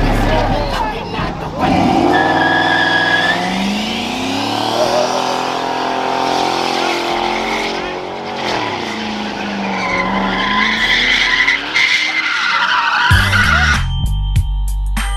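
A car doing donuts on asphalt: the engine revs high, its pitch sagging and climbing again as it swings round, over continuous tyre squeal. Near the end a short music sting comes in.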